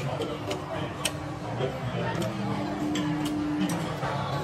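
Background chatter of a busy dining room, with irregular sharp clicks and clinks of tableware, about two a second.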